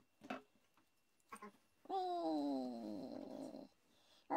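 A couple of light clicks, then one long vocal call of nearly two seconds that slides steadily down in pitch.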